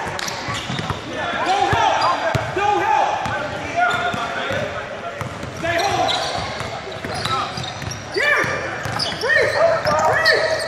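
Basketball shoes squeaking in short, repeated chirps on a hardwood gym floor, with a basketball being dribbled and players' voices echoing in a large hall.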